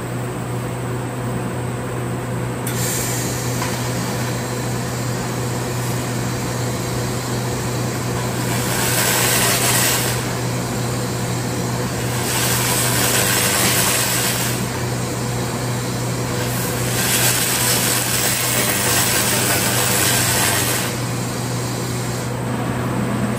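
Handheld fiber laser welder in remote cleaning mode firing at a steel plate: a hiss and crackle starts a few seconds in and swells in three louder stretches, over the steady hum of the laser machine.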